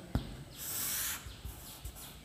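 A light tap of chalk on a chalkboard, then the chalk drawn along the board in a long straight line, a soft hissing scrape lasting about half a second.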